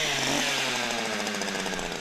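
Gas-powered ice auger engine running steadily under load while its spiral bit bores a hole through lake ice; the engine pitch sinks a little as it works.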